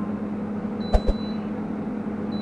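Air fryer running with a steady low hum from its fan; about a second in, two quick clicks as the cooking timer ends and the unit switches off.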